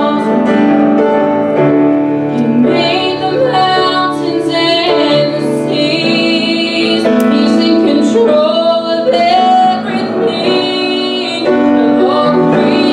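A vocal trio, two women and a man, sings with piano accompaniment, a woman's voice carrying the melody in long held notes.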